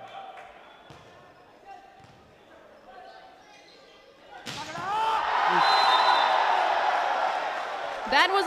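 Volleyball hall crowd. It is quiet for the first half, then a sharp hit about halfway through sets off loud, sustained crowd cheering and yelling during the rally, which carries on to the end.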